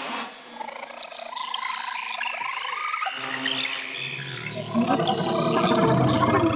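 Experimental ensemble music for flute, percussion and laptop electronics: a dense layer of many short high sliding notes over held tones, swelling louder with a low rumble joining about two-thirds of the way through.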